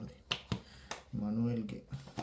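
A few sharp clicks from a plastic container being handled against a glass fish bowl, with a person's short hum about a second in.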